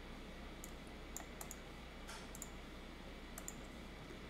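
Faint computer mouse clicks, about eight scattered through a few seconds, some in quick pairs, over a low steady hum.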